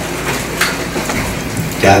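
Steady hiss of background noise through a pause in a man's speech; his voice comes back just before the end.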